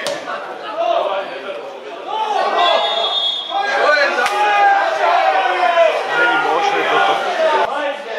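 Men's voices talking and calling out, several overlapping, with a sharp knock of a football being kicked at the start and another about four seconds in.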